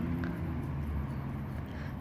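Low steady background hum, with a few faint soft ticks.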